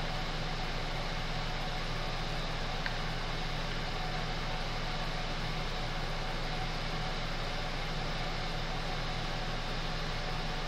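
A steady, unchanging machine hum with an even hiss over it, with one faint tick about three seconds in.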